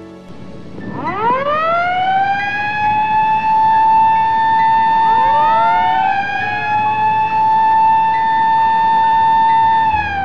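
Fire alarm siren switched on, rising in pitch over about a second to a steady wail. About halfway through a second rising tone joins and overlaps as the first dips. It falls away at the end. It is the alarm signal for a factory evacuation drill.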